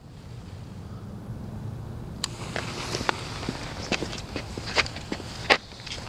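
Homemade duct-taped smoke grenade burning after ignition: a steady rushing hiss that builds in level, with scattered sharp crackles and pops.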